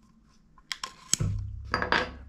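A few light metallic clicks and clinks, starting about half a second in, as a punch drives the takedown pin out through the lower receiver of a Grand Power Stribog pistol-calibre carbine, followed by handling noise as the receiver is gripped.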